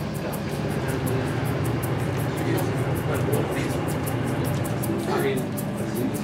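Steady low hum of a liveaboard dive boat's onboard machinery, with faint voices in the background.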